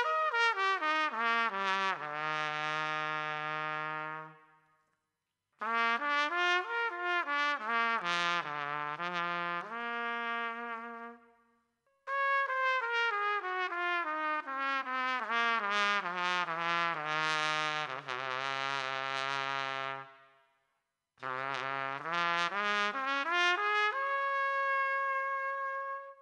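Homemade four-valve trumpet playing four phrases with short pauses between them. Each of the first three steps down note by note into a held low note, reaching below an ordinary three-valve trumpet's range. The last phrase climbs back up and ends on a held higher note.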